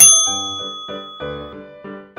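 A bright bell 'ding' sound effect, struck once at the start and ringing out over about a second and a half, over background music of short, evenly spaced notes.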